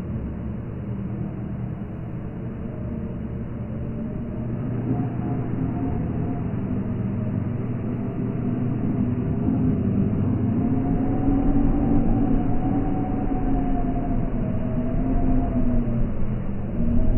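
Low rumbling drone with faint sustained tones that waver slowly in pitch, swelling gradually louder: dark ambient sound design for a film.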